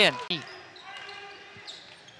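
A commentator's voice trails off at the start, then faint on-court sounds of a college basketball game follow, with thin high tones and light ticks.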